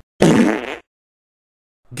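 A man's short, breathy laugh, a snort of air lasting about half a second near the start.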